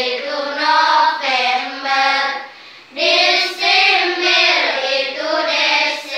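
A class of children singing together in unison, a song listing the names of the months in Arabic, with a brief pause a little before halfway.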